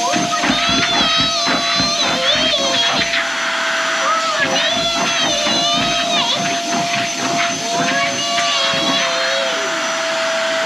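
A child's high-pitched playful vocalizing, wavering up and down in pitch in short repeated runs, over a steady unbroken high hum.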